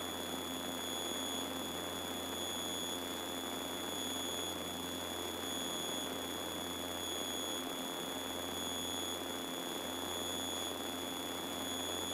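Faint, steady drone of a Piper Seminole's twin engines heard through the cockpit intercom, with a thin, constant high-pitched whine on top.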